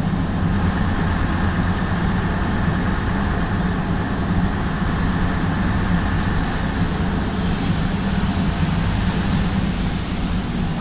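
Leyland PD2 double-decker bus under way, its six-cylinder Leyland O.600 diesel engine running steadily, a constant low drone heard from inside the upper deck.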